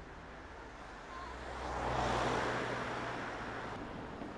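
A car driving past: a low engine hum under a rush of tyre and air noise that swells to a peak about two seconds in, then fades away.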